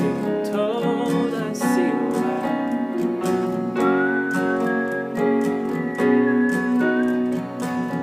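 Acoustic guitar strummed in a steady rhythm, with a man's voice carrying a slow melody over it; from about halfway through a high, slightly wavering melody line sits above the guitar.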